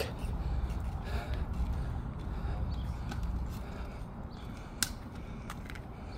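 Outdoor background sound: a steady low rumble with faint distant voices, and a single sharp click a little before the end.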